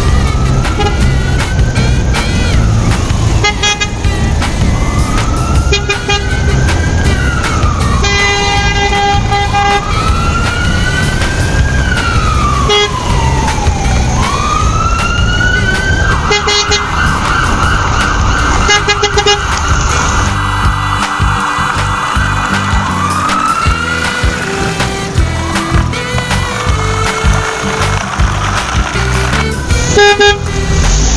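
Upbeat background music with a wailing siren sound rising and falling about every three seconds. The siren switches to a rapid warble for a few seconds just past the middle. A few short horn toots are heard over it.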